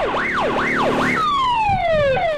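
Electronic police siren giving four quick rising-and-falling whoops, then switching a little after a second in to a long falling tone.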